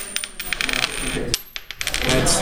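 A coin tossed onto a desk, clattering and ringing in a quick run of clicks, with a second flurry of clicks near the end as it settles.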